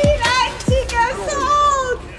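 Raised, wordless voices calling out over music with deep, pitch-dropping beats.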